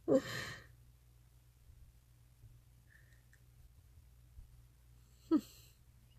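A woman's breathy laugh trailing off into an exhale, then a faint low hum of room tone, and a short breath in near the end.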